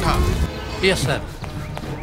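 Film fight-scene sound: a man's shout dies away in the first half-second, then a short cry and a thud about a second in, over a quieter soundtrack bed.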